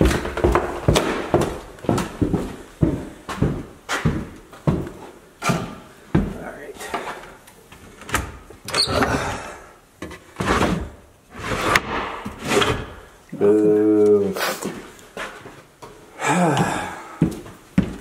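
Knocks and thuds of footsteps on bare floors and of an old painted wooden drawer being tugged at by its pull, with a short voice sound about two-thirds of the way through.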